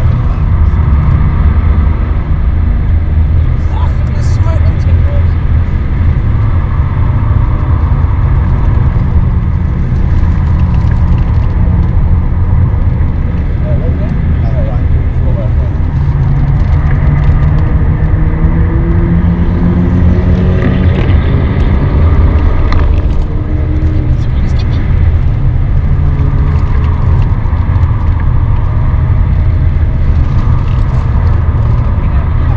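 Inside the cabin of a BMW 530d at speed on a race track: the straight-six turbodiesel engine drones loudly under load, mixed with road and tyre noise. Its pitch climbs a few times as the car accelerates.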